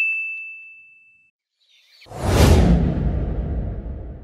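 A bright "ting" sound effect, a single high ringing tone, fades out over about a second. Then, about two seconds in, a whoosh sound effect with a deep rumble swells up and slowly dies away.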